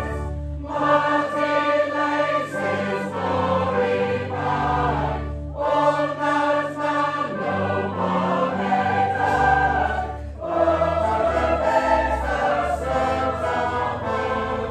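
Congregation and choir singing a carol together, line by line, with short breaks between phrases about every five seconds. Low held notes of an instrumental accompaniment sit under the voices.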